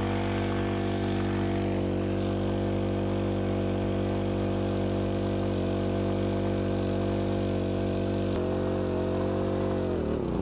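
Mini striker portable fire pump's small four-stroke engine running steadily under load, pumping water, with the fuel valve shut off so that it burns the remaining fuel out of the carburettor. Its pitch wavers slightly a few times and begins to drop at the very end as it runs short of fuel.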